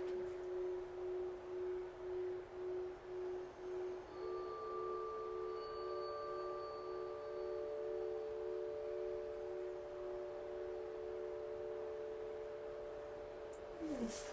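Soft background music of sustained ringing tones, like singing bowls: a low tone that wavers in loudness, joined about four seconds in by higher tones that hold steady.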